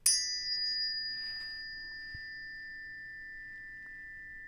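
Two tuning forks from a one-octave set of planet tuners, the D fork struck against the E fork. A sharp metallic strike is followed by two close high tones that ring steadily and slowly fade.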